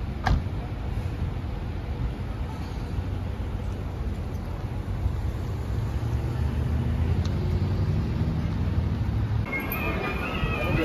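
Street traffic: a low vehicle engine rumble that swells in the second half, with a brief knock near the start.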